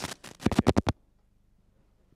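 Microphone handling noise: a rapid run of about eight loud scrapes and knocks within the first second, as a microphone is picked up or clipped on.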